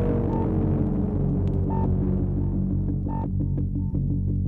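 Electronic big beat music: a low, steady synth drone under a tone that slowly falls in pitch, with a few short high beeps. Short percussive clicks start coming in near the end.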